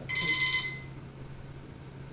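Gym round timer sounding one electronic beep, about two-thirds of a second long, as its countdown reaches zero: the signal that a new three-minute round is starting.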